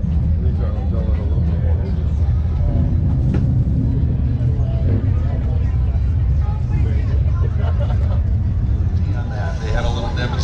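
Crowd voices in the background over a steady low rumble.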